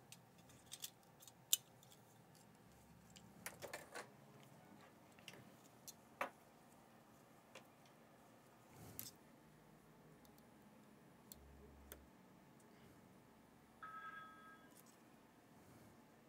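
Near silence at a workbench, broken by faint scattered clicks and taps as a laptop logic board and small connectors are handled. A short, high steady tone lasts about a second near the end.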